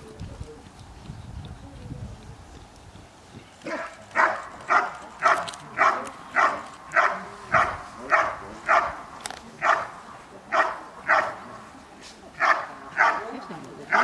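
A dog guard-barking at a motionless helper it has stopped and is holding, a steady run of short loud barks about every 0.6 seconds starting about four seconds in, with a brief pause near the end before a few more barks.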